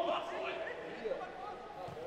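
Faint, distant voices calling.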